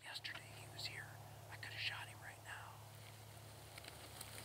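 A man whispering a few short phrases, breathy and quiet, over a faint steady low hum.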